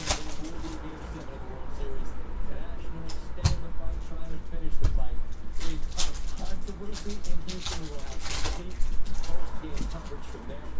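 Foil trading-card pack wrapper crinkling and tearing as it is ripped open and the cards are pulled out, with sharp crackles every few seconds. Faint voices from a TV broadcast run underneath.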